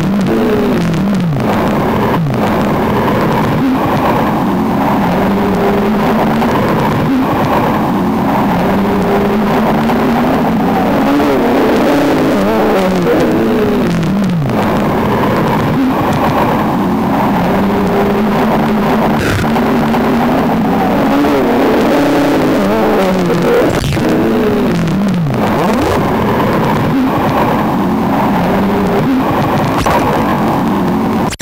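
Electronic improvisation on a Ciat-Lonbarde Cocoquantus 2 looping sound instrument: a dense, continuous drone of layered tones whose pitches swoop up and down again and again.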